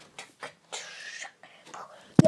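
A child whispering close to the microphone: short, quiet breathy syllables with a longer hissing breath about a second in.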